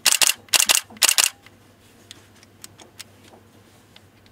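Canon EOS 70D digital SLR firing its shutter three times in quick succession, about half a second apart, each release a sharp double clack of the mirror flipping up and the shutter running, then the mirror returning. A few faint clicks of handling follow.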